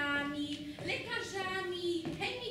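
A female voice singing drawn-out notes, each held steady for about half a second before moving to another pitch.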